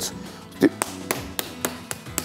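Wooden spoon tapping and pressing minced meat on a wooden cutting board to shape a pljeskavica patty: a rapid, uneven run of sharp taps, over quiet background music.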